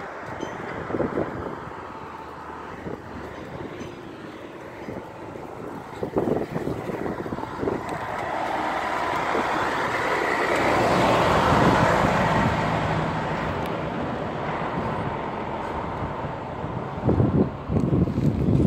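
A truck driving past close by: its engine and tyre noise build up, peak about two-thirds of the way through, and then slowly fade.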